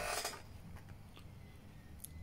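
Brief rustling and rubbing as a hand picks up a Genisys control panel. A few faint clicks follow in a quiet stretch.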